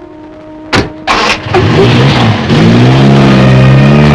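Car sounds: two sharp knocks about a second in, then a small sedan's engine starts and revs up, settling into a steady run as the car pulls away.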